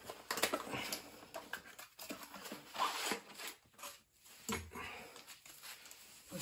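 Hands handling a spare conveyor-dryer heating element: scattered soft rustles and light clicks, with one brief low sound about four and a half seconds in.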